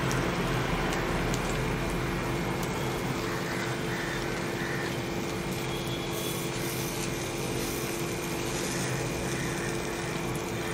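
Mango paniyaram batter frying in oil in the wells of a cast-iron paniyaram pan, a steady low sizzle over a constant background hum.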